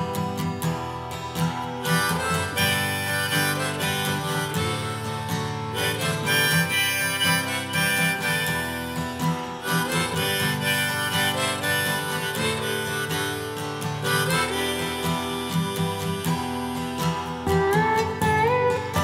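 Instrumental break of a song: a harmonica plays the melody over acoustic guitar, with no singing.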